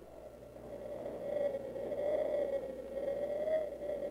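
A single sustained, slightly wavering high tone that slowly grows louder, like a whistle-toned sound effect.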